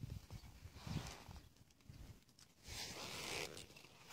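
Puppies scuffling on bare dirt close to the microphone: faint scratchy rustles and soft thumps, with a longer scratchy rustle about three seconds in.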